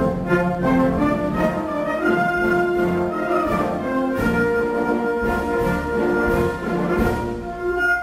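Wind band playing a pasodoble, with brass and woodwinds sounding a melody in long held notes.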